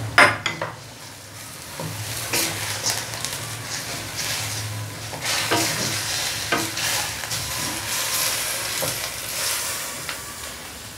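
Chicken and sliced onion sizzling in oil in a stainless steel wok while a wooden spatula stirs them, scraping and knocking against the pan. A few sharp knocks come right at the start, then scrapes every second or so over a steady sizzle.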